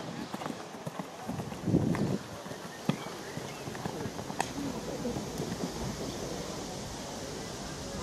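Hoofbeats of a Haflinger stallion cantering on grass turf, with voices in the background.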